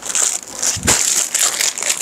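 Clear plastic garment packaging crinkling as a wrapped pack of tops is handled, with a sharper crackle about a second in.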